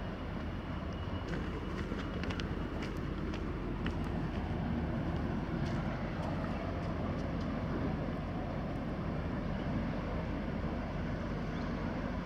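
Steady low engine rumble from a passing cargo ship and its tug, with a few faint ticks in the first half.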